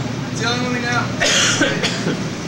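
Saxophone in free improvisation: a wavering held note about half a second in, breaking into a harsh, shrieking squall.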